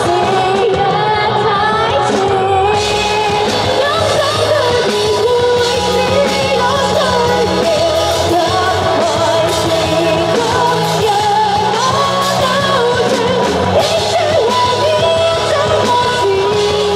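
Live amplified band performance: a woman sings the lead melody into a microphone over drums, guitars and keyboard, the vocal line held and bending continuously.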